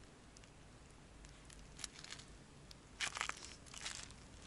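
Faint small clicks from fishing line being handled, then several footsteps on a stony, pebbly shore near the end.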